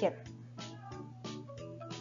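Soft background music playing at low level, with short held notes, under a pause in the narration.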